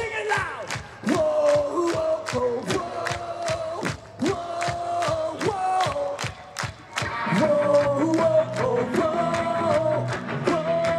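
Concert crowd singing a "whoa-oh" chant along to a fast, steady drum beat, about four strokes a second. The full rock band, with bass and guitars, comes back in about seven seconds in.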